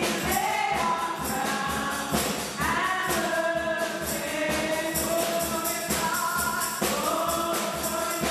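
Gospel worship singing: a group of women's voices singing together through microphones, with percussion keeping a steady beat underneath.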